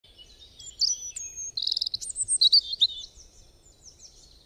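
Birdsong: a quick run of high chirps, whistled notes and trills from more than one bird, loudest in the first three seconds, then fading out.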